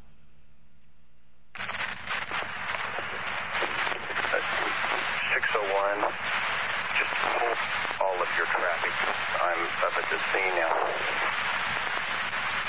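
Police scanner radio recording: a voice transmission buried in heavy static, the words garbled and hard to make out. It starts about a second and a half in, after a faint low hum.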